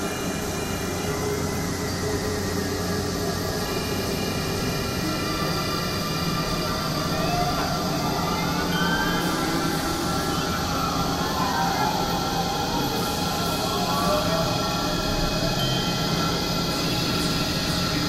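Experimental synthesizer drone: a dense wall of noise with several steady held tones, and pitch glides sweeping up and down around the middle, rising a little in level after the first third.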